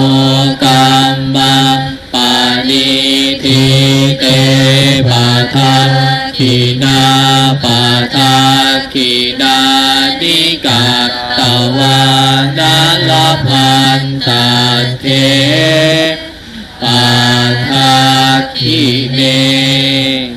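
Buddhist chanting in unison by a male monk on a microphone together with monks and lay congregation: a steady, nearly one-note recitation in short held syllables with brief breath pauses. It ends near the close.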